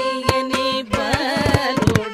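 Carnatic vocal music: women singing ornamented, gliding phrases with violin and mridangam accompaniment. The mridangam strikes regularly, with a quick run of strokes near the end.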